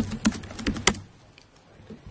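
Keystrokes on a computer keyboard: about five quick clicks in the first second, then it goes quiet.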